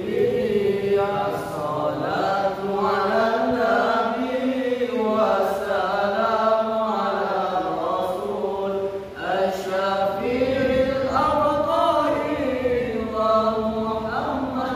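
A group of young male voices chanting an Arabic sholawat, a devotional song praising the Prophet, in unison. They hold long drawn-out notes that glide slowly up and down, with a short breath pause about nine seconds in.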